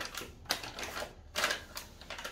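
Paper gift bag rustling and crinkling as a hand rummages inside it, in several short crackly bursts.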